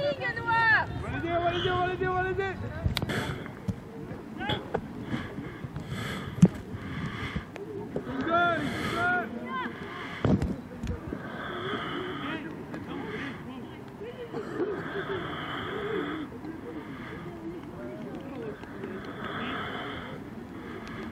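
Voices shouting and calling across a rugby pitch during a youth match, loudest in the first few seconds and again about eight seconds in. There is a single sharp knock about six seconds in.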